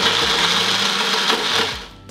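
Countertop blender running at full speed, blending ice cream into a drink, then switched off near the end and winding down.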